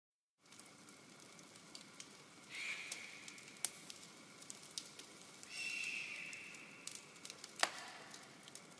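Faint crackling hiss with scattered clicks, the noise-texture intro of a hip hop track. It swells briefly twice.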